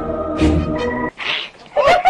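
Dramatic background music with low drum beats cuts off about a second in. A short hiss follows, then a quick run of high, rising-and-falling animal calls near the end, from the cat facing a snake.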